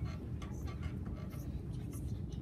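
A marker writing on a small whiteboard: a run of short, scratchy strokes over a steady low room hum.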